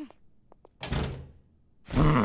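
A door shutting with a dull thud about a second in, then a weary, breathy sigh starting near the end.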